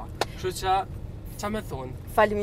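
Short bits of a man's speech inside a moving car's cabin, over the steady low hum of the car.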